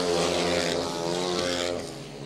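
Speedway motorcycles' single-cylinder methanol-fuelled engines running as the bikes race round the track, a steady engine note that drops away near the end.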